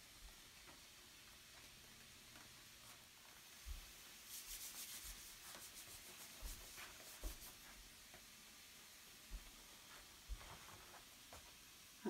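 Near silence with faint rubbing sounds: a quick run of soft scratchy strokes about four seconds in, and a few soft knocks.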